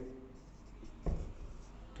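Marker pen writing on a whiteboard: faint, short scratching strokes, with a brief low sound about a second in.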